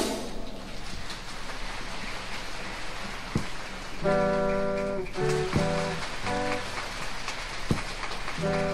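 Live stage-show band music: a loud drum passage ends at the start, leaving a hissing wash. Sustained band chords come in about four seconds in and continue in short held stabs.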